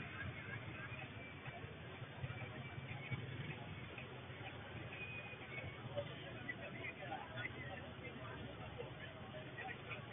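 Faint, narrow-band street ambience: indistinct crowd voices over a low, steady rumble of motorcycle and car engines.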